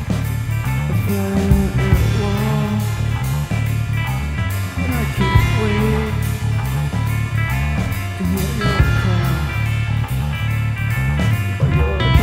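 Instrumental stretch of a stoner rock song, with electric guitar playing over a heavy bass line and a steady beat.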